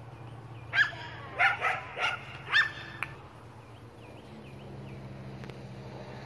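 A dog barking: five sharp barks in quick succession in the first half, over a steady low hum.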